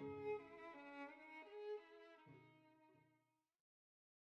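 Slow bowed-string background music, sustained notes over a lower line, fading out about three seconds in.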